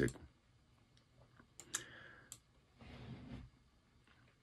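A quiet pause with a few faint sharp clicks about halfway through, then a short soft rush like a breath.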